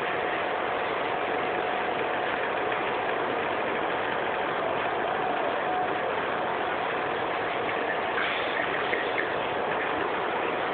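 Steady hiss with a faint constant whine running under it, unchanging throughout, and two small clicks near the end.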